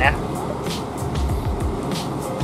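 Steady low diesel rumble of a Mercedes-Benz O500R 1836 coach pulling slowly away, with general bus-terminal noise around it.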